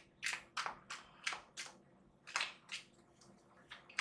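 A tarot deck being shuffled by hand: quick papery slaps and riffles of the cards, about three a second, with a short break a little after the middle.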